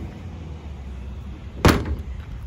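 The hinged plastic lid of a wheeled garbage cart slamming shut once, a single sharp bang near the end.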